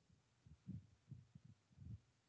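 Near silence, with a few faint, irregular low thumps.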